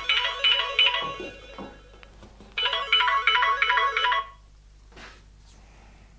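Mobile phone ringtone: a short electronic melody plays once, stops, and plays again about a second and a half later, then stops.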